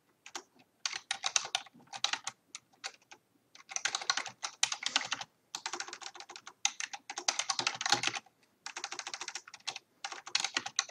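Computer keyboard being typed on fast, in bursts of rapid keystrokes separated by short pauses.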